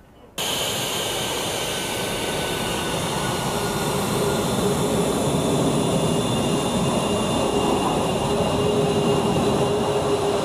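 F-22A Raptor's twin Pratt & Whitney F119 turbofan engines running, a loud steady rush with several high whining tones over it. The sound cuts in abruptly about half a second in and grows slightly louder partway through.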